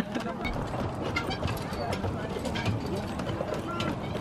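Faint background voices of people talking at a distance, with a few scattered clicks and knocks.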